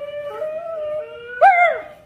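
A dog howling: a long, drawn-out howl held at one pitch, joined partway through by a second, slightly lower howl, ending in a louder note that rises and falls away near the end.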